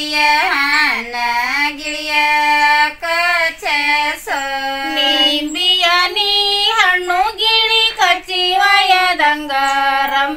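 Women singing a traditional Kannada sobane wedding folk song without accompaniment, in held, gliding phrases with short breaks between them.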